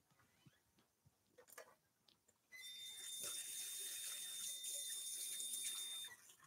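Kitchen tap turned on about two and a half seconds in, water running faintly and steadily into the sink with a thin whistle as hands are washed, then shut off right at the end.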